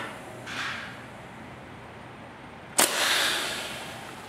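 Pneumatic clicker die-cutting press cycling through a cut of chipboard with a steel rule die: a short hiss about half a second in, then a sharp clack near three seconds followed by about a second of hissing air that fades away.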